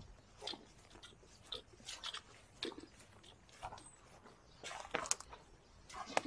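Faint, irregular crunching and rustling of footsteps through grass and dry pine needles, with a louder cluster of rustles near the end as pine branches are brushed aside.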